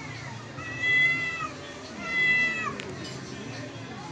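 A domestic cat yowling twice in a standoff with another cat over a dish of food: two long, high, drawn-out calls of about a second each, the second dropping in pitch at its end.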